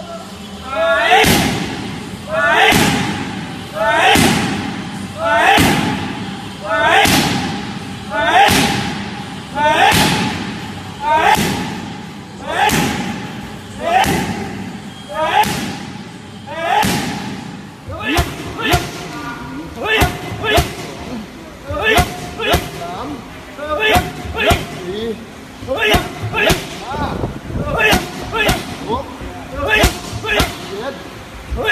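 Kicks and strikes smacking into Muay Thai pads, each hit with a short shouted call. They come in a steady rhythm of about one every second and a half, then faster in quick combinations from about 18 seconds in.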